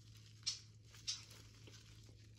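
Two short crinkles of plastic packaging as a bubble-wrapped slime container is handled, about half a second and a second in, over a faint steady low hum.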